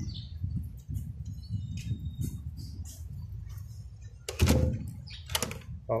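A locked wooden door's handle being tried: a low, uneven rumble, then from about four and a half seconds in a few sharp clicks and knocks as the door fails to open.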